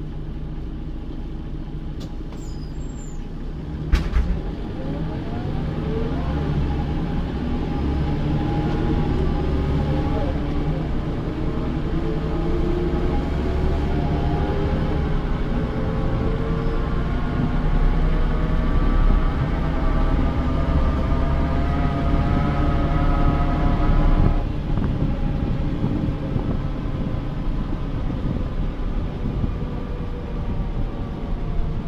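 Mercedes-Benz O405 city bus with an OM447h diesel and ZF 5HP500 automatic gearbox, heard from inside at the rear over the engine. A sharp knock comes about four seconds in. The bus then accelerates, with several whines from the gearbox and rear axle rising steadily in pitch for about twenty seconds, until the sound drops suddenly near the end.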